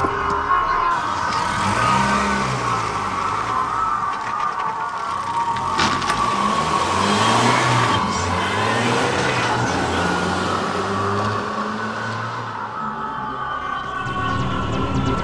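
Car engine running and revving, its pitch rising and falling again and again, with a steady musical tone held underneath.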